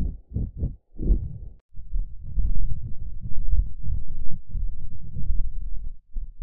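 Heavily processed, muffled soundtrack of an animated studio logo: low, rumbling bursts with nothing bright above them, broken by short dropouts in the first two seconds, then denser and steadier.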